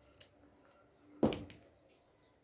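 Scissors snipping through a yellow grosgrain ribbon: one short, sharp cut about a second in, after a faint click as the blades close on the ribbon.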